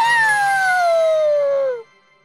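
A cartoon character's voice giving one long spooky howl that starts high and slides down in pitch, then cuts off near the end.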